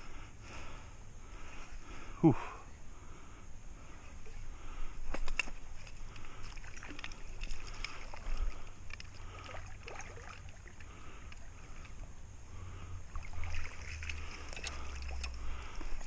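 Light splashing and sloshing of creek water as a hooked brown trout is played and scooped into a landing net, with a few sharp clicks of handling. A breathy "whew" about two seconds in, and a low rumble near the end.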